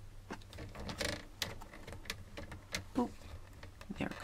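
Card stock being turned and slid about on a paper trimmer: light clicks and taps, with a brief scrape of paper about a second in.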